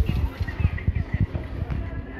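Outdoor street ambience with faint voices of passers-by and irregular low rumbling bumps from handling of a camera carried while walking.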